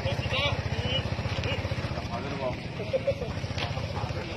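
A steady, low engine rumble with a fast, even pulse, with voices talking over it.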